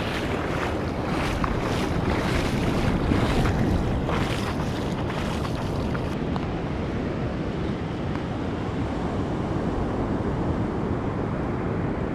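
Wind buffeting the microphone over the wash of surf on an ocean beach, gusty in the first half and steadier after about six seconds.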